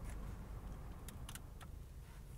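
Low steady rumble inside a car waiting at a traffic light, with a few small sharp clicks, most of them about a second in.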